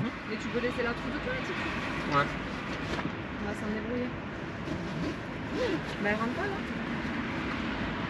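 Faint voices talking in the background over a steady low hum.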